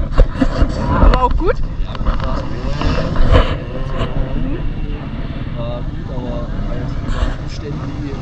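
Indistinct voices of people close by over the running of off-road motorcycle engines.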